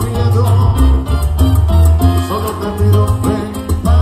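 Live salsa band playing at full volume with a steady beat, the bass line heavy and the percussion strokes regular.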